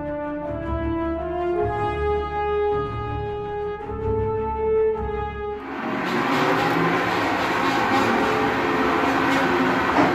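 Orchestral music with sustained brass notes, which cuts away about six seconds in to a Flow waterjet cutting a 5052 aluminum sheet: a loud, steady hiss that stops at the very end.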